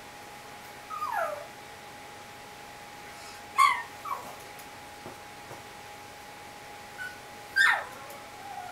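Great Dane puppy whining and yipping in short, high calls that slide down in pitch: one whine about a second in, a sharp loud yip midway followed by a smaller one, and another loud yelp near the end.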